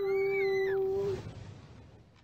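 A woman's drawn-out "ooooh" of surprise: the pitch slides up, holds steady for about a second, then fades out.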